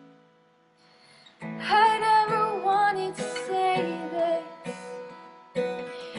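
Acoustic guitar and a woman's singing voice. After a near-silent pause of about a second and a half, strummed chords and her sung melody come in together.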